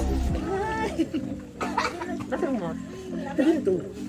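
Several people's voices talking and calling out over one another, with steady background music underneath.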